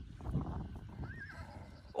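A horse whinnying: a short high wavering call about a second in, then a louder call just at the end, over the faint shuffling of grazing horses.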